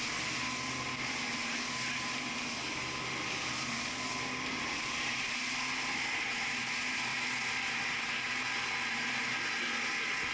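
Outboard motor running steadily at speed, its drone mixed with a steady rush of wind and water as the boat planes through chop.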